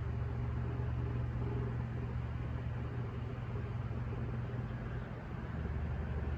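Steady low machine hum with a faint hiss over it.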